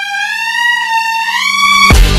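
Slowed-down pop track with the beat dropped out: a single high instrumental note wavers and slides slowly upward, over a low steady tone, before the drums come back in.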